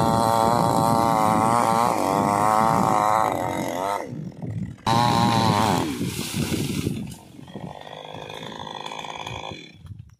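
Two-stroke chainsaw cutting through a felled tree trunk, its engine pitch wavering under load. It breaks off about four seconds in, starts again abruptly about a second later, then settles to a quieter, steadier running near the end.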